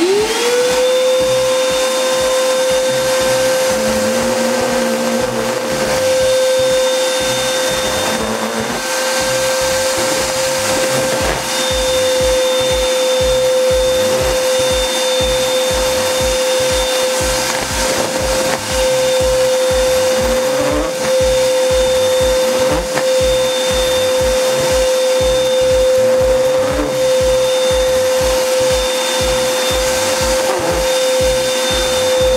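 Ridgid 6-gallon wet/dry shop vacuum's 2.5 hp motor switching on, rising within half a second to a steady high whine, and running continuously as the hose nozzle sucks up sawdust and paper scraps, over a music beat.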